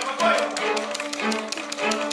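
A small string ensemble of violins and cello plays sustained low notes, with rapid, irregular tapping of typing over it.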